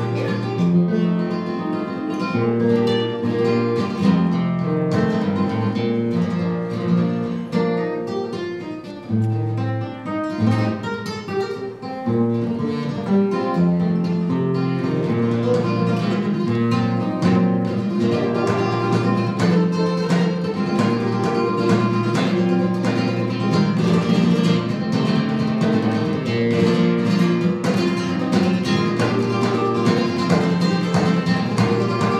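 Flamenco guitar playing, with strummed chords and plucked melodic runs, dropping to a softer passage about eight to twelve seconds in before picking up again.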